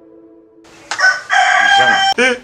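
A faint steady music tone fades out, then about a second in a rooster crows once, loudly, in one long held call.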